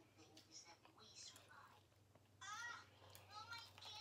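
Faint high-pitched voice in the background, heard mostly in the second half, over a low steady hum.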